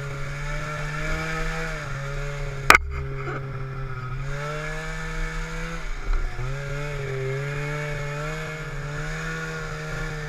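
Snowmobile engine running at trail speed, its pitch wavering as the throttle is eased and opened. There is one sharp click or knock just under three seconds in. Around six seconds in, the engine drops briefly and picks back up with a couple of small knocks.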